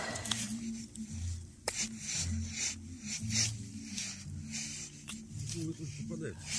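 Rustling of dry grass and fallen leaves with hand and knife handling noise, as brittle saffron milk cap mushrooms are cut at the stem with a knife. It comes as repeated short scrapes, with a couple of sharp clicks.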